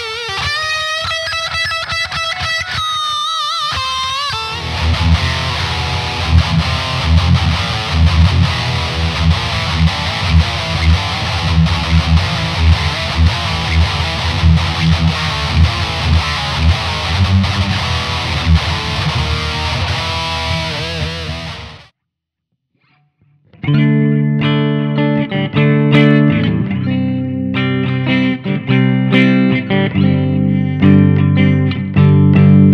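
Distorted electric guitar played with a thick pick: a few seconds of sustained lead notes bent in pitch, then heavy chugging riffs that cut off abruptly about 22 seconds in. After a second and a half of silence come sparser, clearer picked notes and chords.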